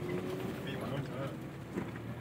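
Steady low hum inside the cabin of a 1993 Honda Civic rolling slowly, its engine running lightly with a faint steady note early on.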